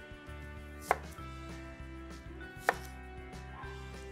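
A kitchen knife cutting an onion into wedges on a plastic cutting board: two sharp knocks of the blade striking the board, about two seconds apart, over soft background music.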